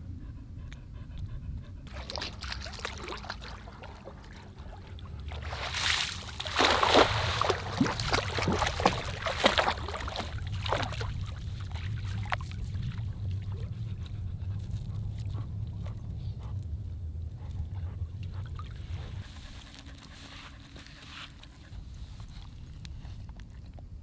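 Lake water splashing and sloshing as a cast net is worked in the shallows, loudest for several seconds just before the middle, over a steady low rumble.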